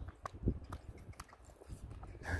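A horse cantering on grass, heard as faint, irregular hoof thuds and clicks.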